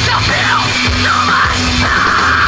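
Live rock band playing loud: electric guitars through amplifiers over a drum kit, with a voice yelling over the band.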